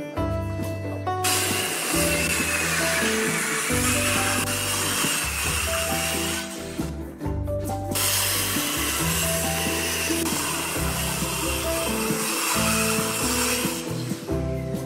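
Makita circular saw cutting through plywood with a high, wavering whine. It stops for a moment about halfway through, then cuts again. Background guitar music plays underneath.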